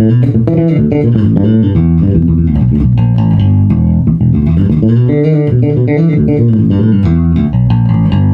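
Gamma Jazz Bass with EMG pickups and a high-mass bridge, played through a Bergantino HDN410 cabinet: a loud, busy run of plucked bass notes that does not pause.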